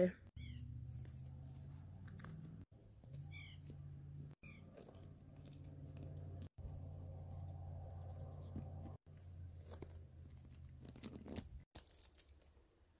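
Faint outdoor ambience: a steady low hum with small birds chirping now and then. The sound breaks off abruptly several times.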